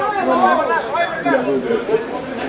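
Several voices talking and calling out over one another at an outdoor football match.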